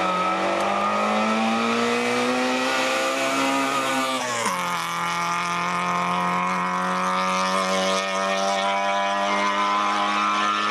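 Small hatchback race car's engine under hard throttle: its note climbs steadily as the car approaches, drops sharply about four and a half seconds in as it passes close by, then holds a steady pitch as it carries on up the road.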